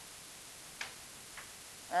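Two light clicks about half a second apart, over a steady faint hiss.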